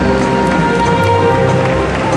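Music playing at a steady, loud level, with long held notes.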